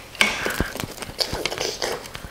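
A pizza wheel cutter rolling through a baked pizza and scraping on the metal baking sheet beneath it, with irregular clicks and short scrapes.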